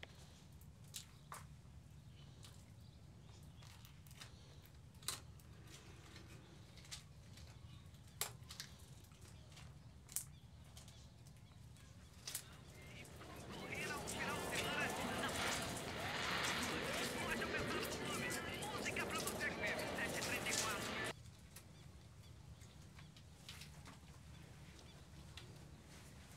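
Small crinkles and clicks of plastic film being handled around a mobile phone, over a faint low hum. About halfway through, a dense, busy chatter swells up, becomes the loudest sound, and cuts off suddenly near the end.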